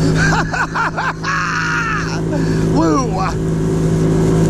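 Outboard motor of a small aluminium jon boat running steadily at cruising speed, its hum starting abruptly. A man whoops a few times over it.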